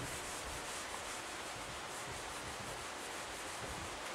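Whiteboard being wiped clean with an eraser: a steady rubbing hiss.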